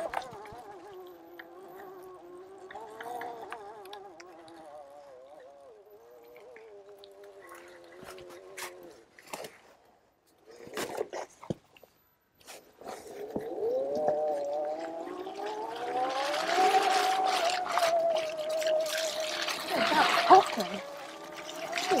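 Electric trials bike motor whining, its pitch wavering with the throttle, then falling quiet about ten seconds in before rising again as the bike pulls away. Tyre noise over wet, muddy ground grows louder in the last few seconds, with a few knocks from the ride.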